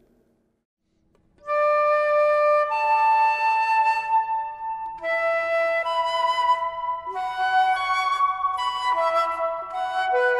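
Concert flute playing sustained notes in pairs a perfect fifth apart (D then A, E then B, and on up), starting about a second and a half in. Each pair checks whether the fifth is in tune, which shows whether the lips cover too much or too little of the embouchure hole.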